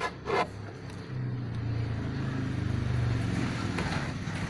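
Honda Beat eSP scooter's single-cylinder engine: a steady low engine hum sets in about a second in and holds at idle, after a brief short noise near the start.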